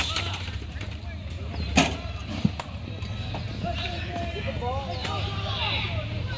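Distant shouting from players and spectators at a box lacrosse game, with one sharp knock from the play a little under two seconds in and a lighter click about half a second later, over a steady low hum.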